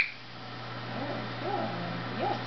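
A single sharp click with a short ringing tone right at the start, typical of a dog-training clicker marking the dog's move toward the basket. From about a second in come a few soft, low, rising-and-falling voice sounds.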